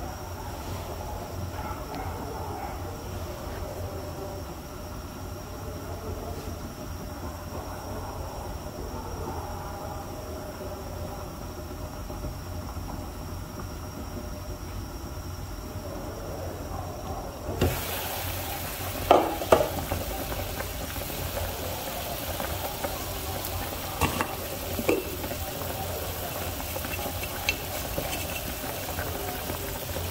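Soup boiling in a covered pot on a stove: a steady low bubbling. A little past halfway it turns suddenly brighter and hissier, and there are a few sharp clinks and knocks of the pot's glass lid and a spoon being handled.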